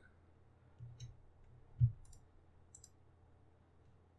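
Faint computer mouse clicks, a handful spread over a few seconds, with one short low thump about two seconds in.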